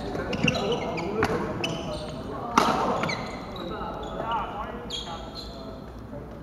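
Sharp knocks of badminton play, rackets hitting shuttlecocks and feet on the wooden court, echoing around a sports hall, the loudest about two and a half seconds in, with people talking.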